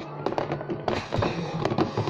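Hard plastic lunch boxes handled and knocked against each other and the tabletop: a quick, irregular run of sharp clicks and taps.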